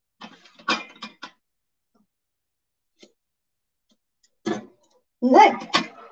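Scissors snipping hair: a few quick snips about a second in, and another short burst of snipping shortly before the end.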